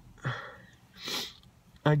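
A woman sniffling twice through her nose, about a second apart, while tearful, before she starts speaking again.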